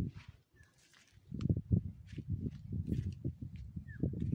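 Irregular low rumbling gusts of wind buffeting the microphone, starting about a second in, with two short high chirps.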